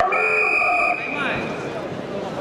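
Electronic timing buzzer sounding one steady, loud blast of about a second that cuts off abruptly, signalling that the period clock has run out. Arena voices and crowd noise follow.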